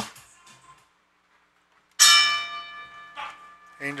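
Boxing ring bell struck once about two seconds in, ringing and fading over the next second or two: the bell starting the sixth and final round.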